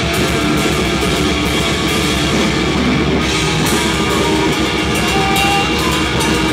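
A metal band playing live: electric guitar and drum kit going loud and steady without a break.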